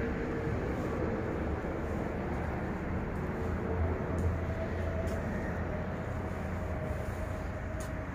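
A steady low rumbling noise with a faint humming tone in it, unchanging throughout.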